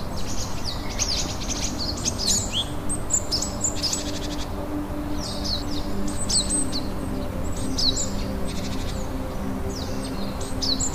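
Songbirds chirping in quick phrases of short notes that fall in pitch, over a soft, sustained low musical drone that comes in about two seconds in.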